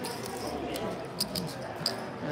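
Low murmur of voices around a poker table, with three short, sharp high clicks of poker chips in the second half.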